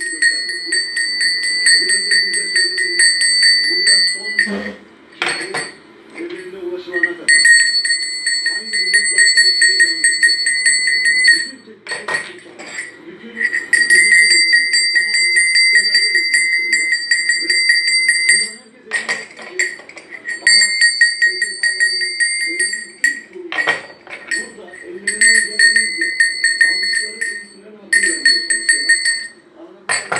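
Brass livestock bell marked number 3, shaken by hand so its clapper strikes rapidly and it rings with a bright, high tone. It rings in about seven runs of a few seconds each, with short pauses between.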